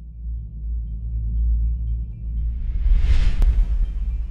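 Cinematic intro sound design: a low rumble that grows louder, with a whoosh swelling up about two and a half seconds in and a sharp hit just after three seconds.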